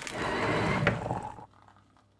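Electric coffee grinder running in a short steady whir for about a second and a half, then stopping.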